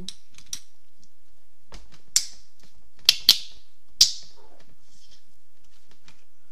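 Small hard objects handled on a workbench: four sharp clicks, the second and third close together, over a steady faint background.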